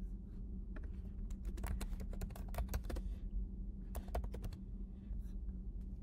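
Typing on a computer keyboard: irregular clusters of keystrokes, busiest between about one and three seconds in and again around four seconds, over a low steady hum.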